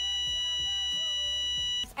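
A steady electronic beep held at one pitch for about two seconds, cutting off suddenly near the end, used as the sound effect of the lives being paid. A faint voice runs underneath.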